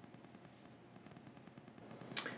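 Near silence, with only faint background noise.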